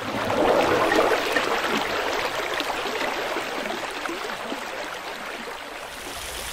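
Running water sound effect for water pouring into a silt trap. It swells in over the first second, then slowly eases off.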